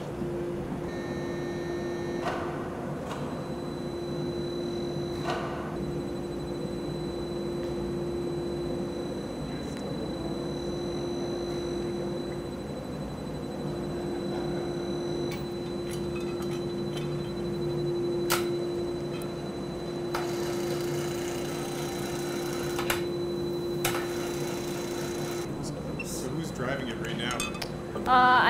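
A steady low machine hum that drops out briefly a few times, with a faint high whine in the first half and a few sharp clicks and clinks of metal hardware.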